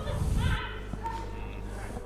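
Low thuds from wrestlers' feet on the ring boards in the first half-second, with scattered crowd voices echoing in a large hall.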